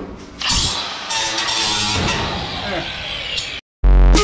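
A Milwaukee M18 cordless power tool running against galvanized sheet-metal ductwork, giving a loud, harsh metallic noise that starts about half a second in and cuts off suddenly shortly before the end.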